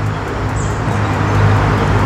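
Steady road traffic noise from a nearby main road, picked up through a clip-on wireless lavalier microphone with no noise reduction switched on, with a steady low hum underneath.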